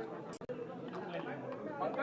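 Speech only: background chatter of several voices talking over one another, with a brief drop-out about half a second in.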